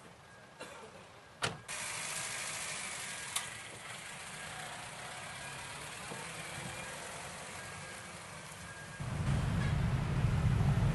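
A sharp knock about a second and a half in, like a car door shutting, then a steady hiss of vehicle and street noise; near the end a louder low rumble of traffic sets in.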